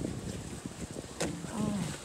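Outdoor wind noise on the microphone, with a few light knocks and a short vocal sound from a person in the second half.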